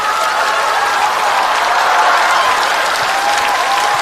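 Studio audience applauding steadily, with laughter mixed in, in response to a stand-up comedy punchline.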